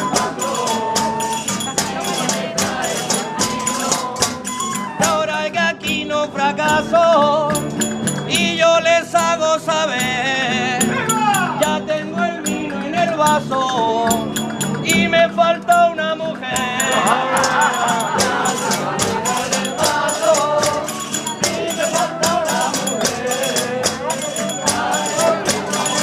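Murcian aguilando folk music played live: a steady, fast beat of shaken and struck percussion, with a wavering melody line rising above it from about five to sixteen seconds in.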